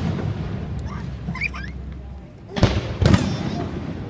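Fireworks display: a low rumble, then two loud booming bursts about half a second apart near the end.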